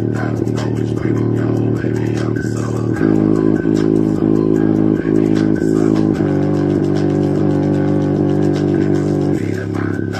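Bass-boosted music played through a small bare speaker driver, with a deep sustained bass line. The bass notes change at about three seconds in and again at about six seconds.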